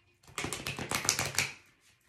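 A deck of oracle cards being shuffled by hand: a quick run of card clicks lasting just over a second.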